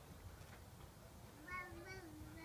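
Quiet low background rumble, with a faint voice sounding briefly near the end.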